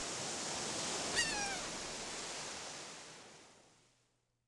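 Logo sound effect: a rushing wash of noise like surf, with a single short, falling gull cry about a second in, the whole fading out near the end.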